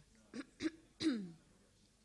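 A person coughing to clear the throat: three short coughs within about a second, the last the loudest.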